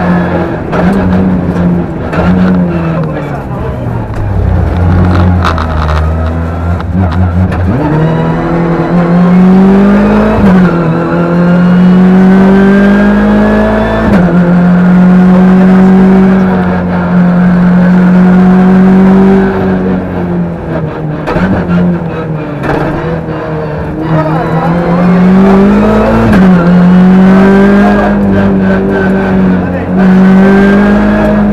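Rally car engine heard from inside the cabin, driven hard at high revs. The pitch keeps dropping sharply and climbing back as the driver shifts gear and lifts, with a longer low-revving stretch about a third of the way in before it pulls back up.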